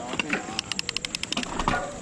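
Mountain bike rear freehub ratcheting while the bike coasts off at low speed, a run of quick even clicks, about ten a second.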